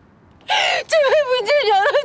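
A woman sobbing: a sharp gasping breath about half a second in, then a wavering, crying wail.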